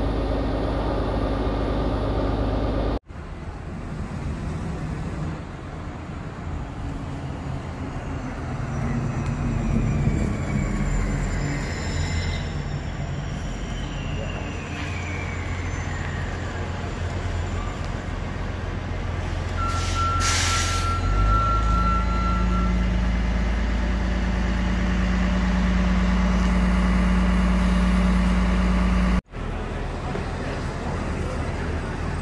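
Orion VII city transit buses running at a curbside stop. One pulls away with a whine that falls in pitch. About twenty seconds in there is a one-second hiss of air, like air brakes, followed by a steady low engine drone from a bus close by.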